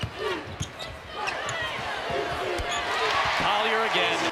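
Basketball game sound in an arena: a ball dribbled on the hardwood court, with crowd noise swelling over the last second or so.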